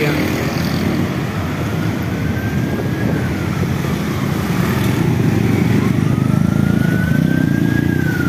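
Emergency vehicle siren wailing, a slow rise and fall that comes round about every four to five seconds, over the steady running of cars and motorcycles in heavy street traffic.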